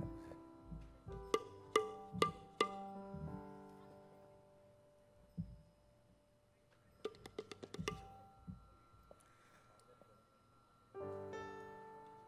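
A row of tuned tablas (tabla tarang) played softly, single strokes each ringing with a clear pitch and spaced out like a slow melody, with a quick run of strokes about seven seconds in.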